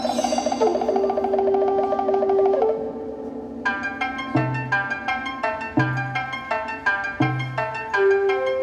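Instrumental introduction to a song: held notes at first, then after about three seconds a steady pattern of short repeated notes over a low bass note that returns about every second and a half.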